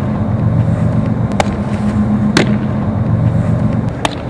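Softballs smacking into a catcher's mitt as pitches are caught: sharp pops about a second apart, over a steady low hum.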